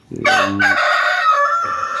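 A rooster crowing: one long crow that starts a moment in and lasts nearly two seconds.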